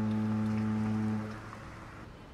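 Royal Princess cruise ship's horn sounding a steady, low blast that cuts off about a second and a half in, leaving a faint hiss of open air.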